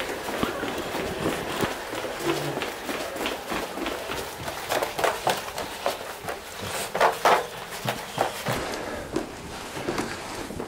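Footsteps walking through a house and up stairs, with rustling from a hand-held camera: an uneven run of short knocks and scuffs, loudest about seven seconds in.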